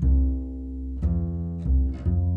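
Double bass playing three low notes, each with a sharp attack that then dies away, the third a lower note, heard through an AKG D202 microphone.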